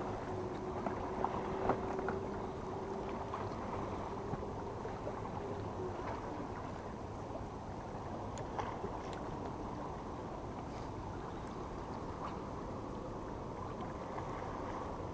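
Steady low rumble of seashore ambience at a rocky shoreline, with a faint hum that fades out about six seconds in and a few light clicks.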